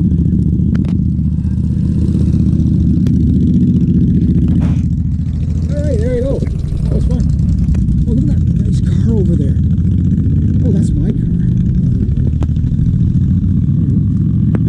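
Motorcycle engines running with a loud, steady low rumble as the last bikes pull away.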